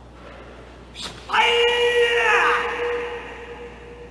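A karate kiai: the athlete's single loud, drawn-out shout during a kata, falling in pitch as it ends, with a short sharp burst just before it.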